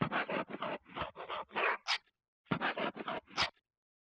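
Marker writing on a white surface: quick scratchy strokes in two runs with a short pause between, each run ending in a fast rising squeak.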